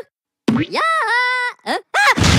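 A Minion's high-pitched cartoon gibberish voice: one drawn-out, wavering cry beginning about half a second in, then two short yelps near the end.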